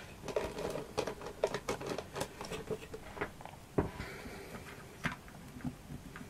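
Irregular small clicks, taps and rustles of craft materials being handled off-camera, with one sharper tap a little before the four-second mark.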